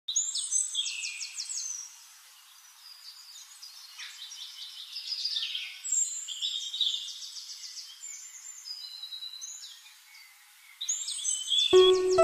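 Songbirds singing in phrases of high chirps and fast trills, with short pauses between them. Music with held notes comes in near the end.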